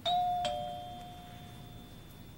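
Two-note doorbell chime, ding-dong: a higher note and then a slightly lower one about half a second later, both ringing out and fading over about a second and a half. It announces a visitor at the door.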